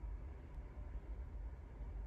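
Quiet room tone: a faint steady low hum with no distinct sounds.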